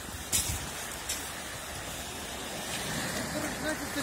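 Steady rush of small waves washing on a pebbly shore, with a low rumble. There are a couple of brief clicks in the first second and faint distant voices near the end.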